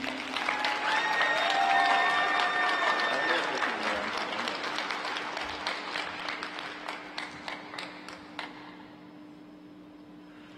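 Arena audience applauding, with some cheering in the first few seconds; the clapping thins out and fades over the last few seconds.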